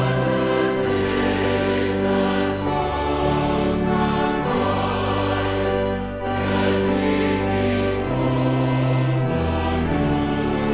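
Choir singing a hymn verse in unison with pipe organ accompaniment, the organ holding deep sustained bass notes under chords that change every second or so. There is a brief breath between lines about six seconds in.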